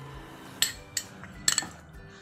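A few sharp clinks of kitchen dishes, spaced about half a second apart, the last a quick double.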